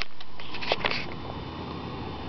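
Handling noise: a few light clicks and rustles in the first second over a steady hiss that fades.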